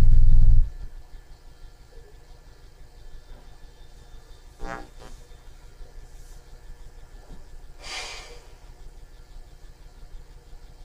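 A loud low rumble cuts off suddenly about half a second in, leaving faint room noise. A short low sound comes near the middle, and a brief breathy rustle comes about eight seconds in.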